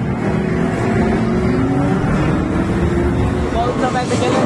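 Engine sound effect from a ride-on motorcycle racing arcade machine, a pitch that rises slowly like a bike speeding up, over the loud, steady din of a busy arcade.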